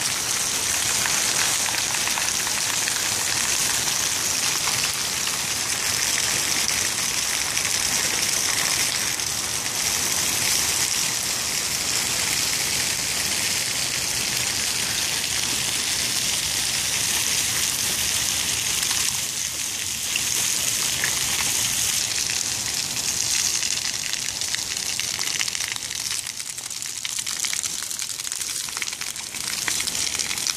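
Steady hiss of water: rain falling and splash-pad fountain jets spraying onto wet concrete.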